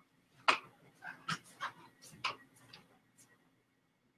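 Several short knocks and scuffs as a person gets up from a leather recliner and walks away, the loudest about half a second in, the rest growing fainter until they stop about three and a half seconds in.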